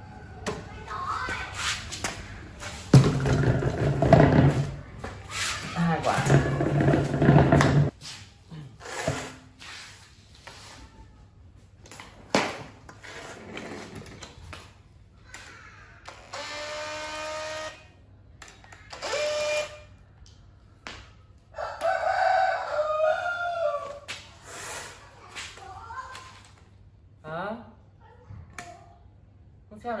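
Cordless impact wrench running in short bursts while a wheel is bolted onto the front axle hub, loudest in the first several seconds, with clicks and knocks of the parts being handled after. Around the middle, two long pitched calls stand out in the background.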